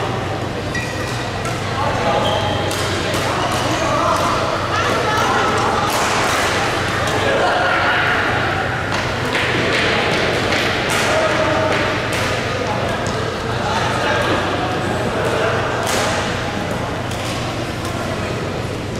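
Badminton rackets striking a shuttlecock: sharp cracks at irregular intervals during rallies, over the chatter of voices in a large hall and a steady low hum.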